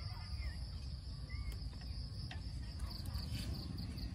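Crickets chirping in a steady high trill, which becomes pulsed near the end, over a constant low background rumble. A couple of light clicks come in the middle.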